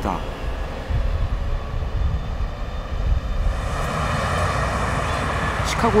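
City street traffic with a bus passing close: a steady low engine rumble, joined by a brighter rushing noise from about halfway through.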